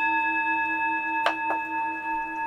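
Brass singing bowl ringing on after a strike, several steady tones sounding together with the low one wavering. Two light clicks come about a second and a quarter and a second and a half in.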